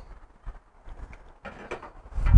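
Faint footsteps with a few light knocks scattered through.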